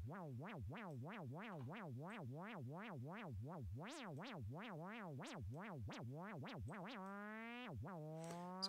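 Native Instruments Massive X synthesizer note with its pitch swept up and down by a random LFO, about three sweeps a second, each peak reaching a different height. About seven seconds in, the sweeping stops and the note holds an almost steady pitch.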